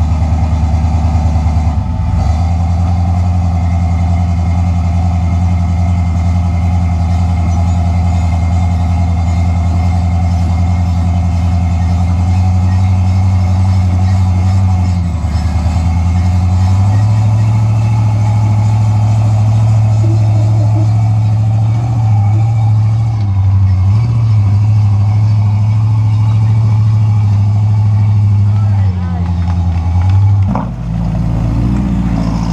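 Jeep rock crawler's engine pulling steadily at low revs while crawling up a rock slab. The revs dip about two seconds in, rise from about halfway, and drop again near the end.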